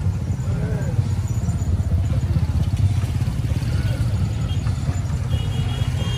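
Motorcycle engines of a tricycle parade running at low speed close by: a steady low rumble, with people's voices in the background.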